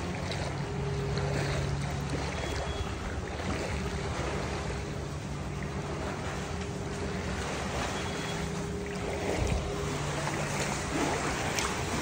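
Floodwater swishing and sloshing steadily around the legs of someone wading through it, over a faint steady low hum.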